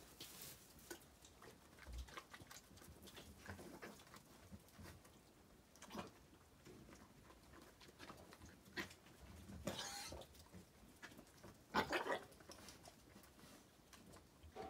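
Zwartbles ewes pulling and chewing hay at a feeder: quiet, scattered rustling and crunching of hay and straw, with a few louder bursts of rustling in the second half.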